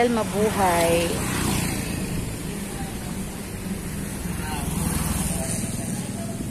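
Street traffic, with a motor vehicle engine running steadily over a background hiss. A voice is heard briefly in the first second or so.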